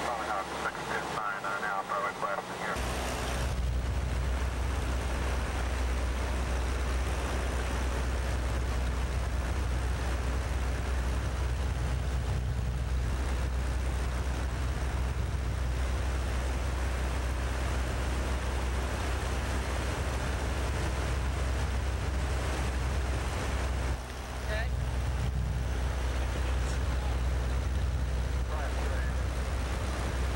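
Steady low rumble of a light aircraft's engine and wind noise inside the cabin in flight, coming in about three seconds in. It dips briefly once, a few seconds before the end.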